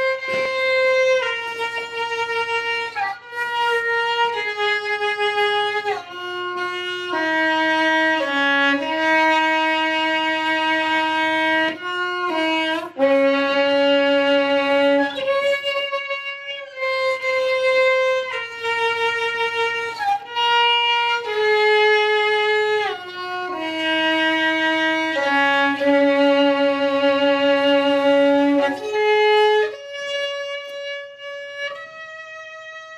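Solo violin playing a slow melody of held notes. Its phrases step downward and repeat several times, with slides between some notes.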